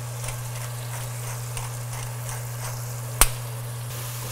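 Red onion, ginger and garlic frying in vegetable oil in a pot: a steady light sizzle over a low hum, with one sharp knock a little after three seconds in.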